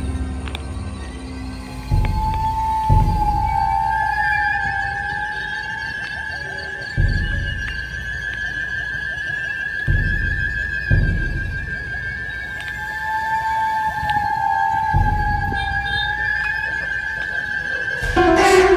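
Eerie horror-style background music: a long held high tone over a wavering lower tone that comes and goes, with deep booming hits every few seconds.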